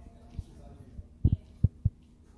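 Dull, low thumps: one faint one, then four louder ones close together in the second half.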